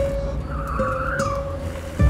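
Car tyres squealing briefly in a wavering whine under a second long, starting about half a second in, as an old sedan takes the road, over film score music with a steady held note.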